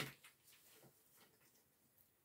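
Near silence: room tone with a few faint, soft ticks.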